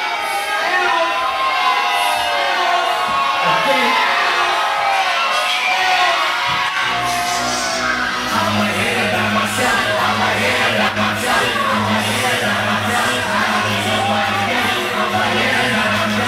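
Live hip-hop concert sound: a crowd yelling and whooping with vocals over the music, and a heavy bass beat that comes in about seven seconds in and holds.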